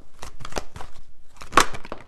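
Tarot cards being handled as the next card is drawn from the deck: a quick run of papery snaps and rustles, the loudest about one and a half seconds in.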